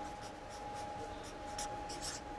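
Felt-tip marker writing on flipchart paper: a series of short, faint, high-pitched strokes as letters are drawn.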